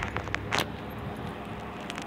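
Handling noise: rustling and a few sharp clicks over a low steady rumble.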